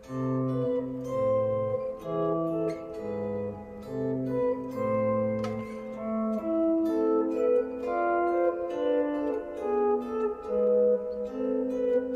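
Clean-toned electric guitar playing a slow two-voice etude line, one plucked note after another, with bass notes under a melody, outlining A minor, D minor and E7 back to A minor. The lowest notes stop about halfway through, and the upper voice carries on.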